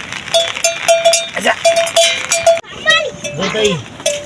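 A bell hanging from a water buffalo's neck clanks rhythmically as the animal moves, about three strikes a second on one ringing pitch. It stops abruptly about two-thirds of the way in and is followed by a voice.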